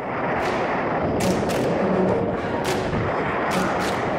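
Wind buffeting a paraglider pilot's camera microphone in flight: a loud, rough rush with several sharp crackles and knocks at irregular moments.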